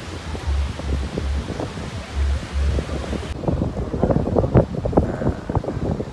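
Wind buffeting a phone's microphone over the wash of breaking sea surf. About halfway the sound cuts to a different scene, with scattered knocks and indistinct background voices.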